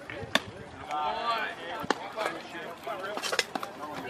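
A single sharp pop of a pitched baseball into the catcher's mitt about a third of a second in, followed by voices calling out on the field.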